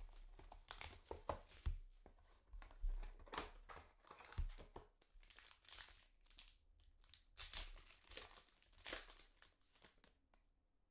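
Trading card pack wrappers crinkling and being torn open by hand, with cards handled in between: irregular, faint crackles and rustles that stop near the end.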